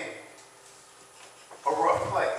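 A man preaching into a microphone trails off into a pause of about a second. Near the end comes a short voice sound that bends in pitch.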